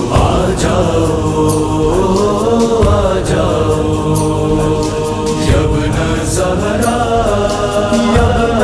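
Devotional Urdu manqabat: a male voice sings long held notes over layered vocal backing, with scattered percussive hits.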